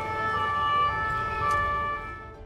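Emergency vehicle siren holding a steady tone.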